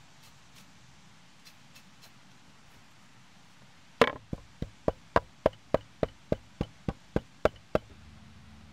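A large knife chopping fresh leafy herbs on a carved wooden board: a few faint taps at first, then from about halfway a run of about fourteen sharp, even chops, three or four a second, the first the loudest.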